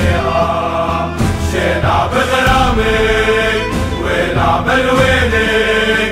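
Music: a chorus of voices singing a chant-like song over a steady instrumental backing, the sung line drawn out on long held notes.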